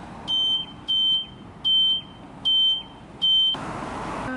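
Self-serve car wash payment keypad beeping as its keys are pressed: five short, high beeps about three quarters of a second apart.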